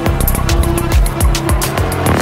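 Dark progressive psytrance in a DJ set: a driving kick drum at about two beats a second under a sustained synth tone and busy hi-hat ticks.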